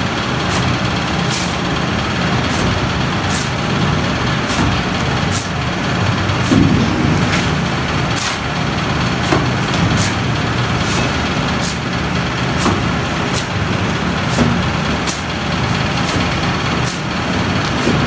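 A steady low machine rumble, like an engine running, with a mason's trowel throwing cement plaster onto a brick wall. Quick regular high clicks come about every 0.7 s, roughly one and a half a second.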